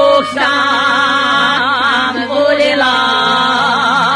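Two voices singing an old-style izvorna folk song in long held notes: the upper voice has a wide, shaking vibrato, held over a steadier lower voice.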